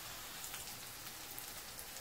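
Minced onion frying gently in melted butter in a frying pan: a faint, steady sizzle with light crackles, the onion being softened rather than browned.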